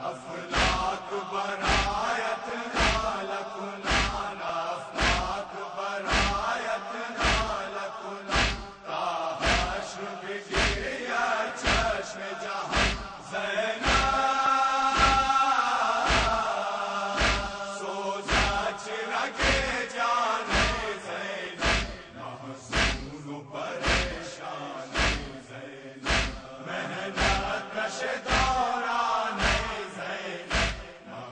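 A group of men chanting a noha in unison over a steady beat of matam, hands struck on chests about three times every two seconds. Midway the voices hold one long note before the chant goes on.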